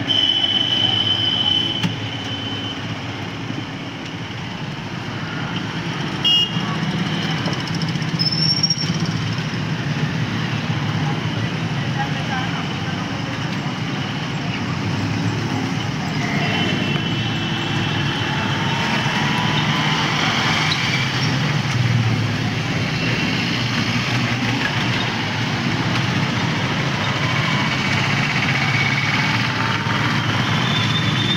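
Steady street traffic with passing motorcycles, a few short horn toots, and voices in the background.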